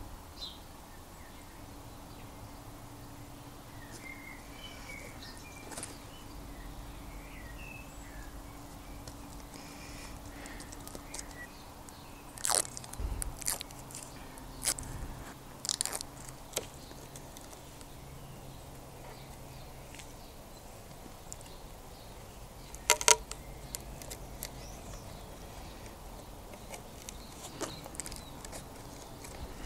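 Hands handling a clear acrylic headlight protector and double-sided Velcro pads: scattered small clicks and crackles, with a louder cluster of sharp clicks late on as the plastic is offered up to the headlight.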